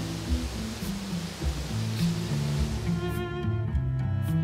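Background music of low bowed strings playing a slow line of held notes, under a hiss that drops away about three seconds in.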